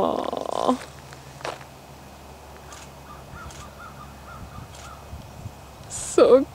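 Birds calling: one loud call falling in pitch at the very start, then a faint run of about eight short, evenly spaced chirps in the middle.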